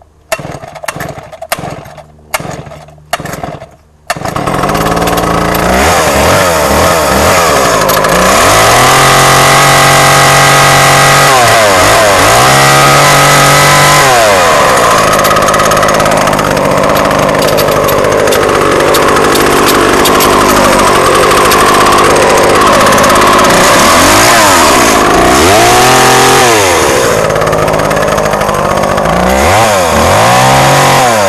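Vintage Solo 645 hobby chainsaw's 67 cc two-stroke engine pull-started: about four short pulls on the starter cord, catching about four seconds in. It then runs loud and fast, revved up and down several times.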